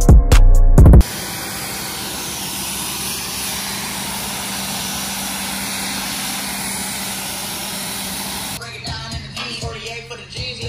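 Music with a heavy beat cuts off about a second in. A pressure washer takes over, spraying water onto a car's body as a steady hiss over a low hum, and stops near the end.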